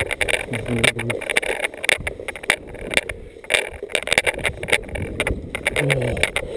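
Irregular rustling, scuffing and knocking of footsteps pushing through tall streamside grass, with a brief voiced sound about half a second in.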